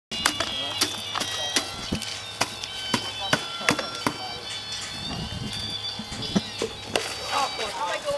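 Sharp, irregular clicks and knocks, roughly two a second, from a bucket and trowel working wet pebble-wash aggregate mix, over steady high tones and a low hum. Voices join near the end.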